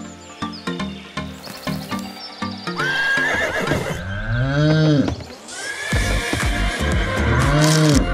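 Horse whinny sound effect, heard twice, over background music.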